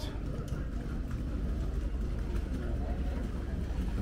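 Steady outdoor city ambience: a continuous low rumble with faint distant voices.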